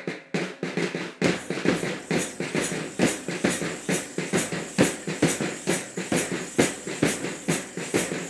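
Band-party drums beaten in a fast, steady rhythm. A deeper drum joins about a second in, and sharp bright accents land about twice a second.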